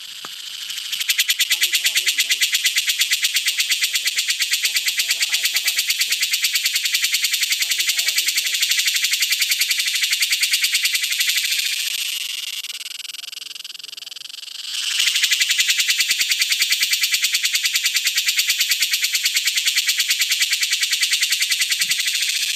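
A male cicada's calling song: a loud, rapidly pulsing high buzz. It starts about a second in, dies away around the middle, and starts up again sharply a few seconds later.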